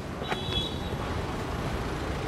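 Steady hum of road traffic in the background, with no distinct nearby event.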